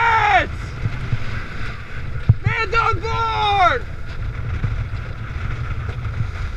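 Steady low rumble of high wind buffeting a helmet-mounted camera microphone aboard a boat. A crew member gives a long shouted call about two and a half seconds in.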